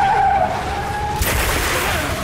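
Vehicle tyres screeching for about a second, the pitch sagging slightly, then a loud rushing noise takes over.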